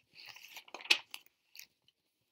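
Paper rustling and crackling as a picture book's page is turned, with one sharper crisp snap about a second in.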